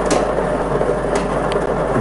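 Lottery draw machine mixing its balls: a steady rattling rush of balls tumbling in the mixing chamber, with a few sharper clicks of balls knocking together while the next number is being drawn.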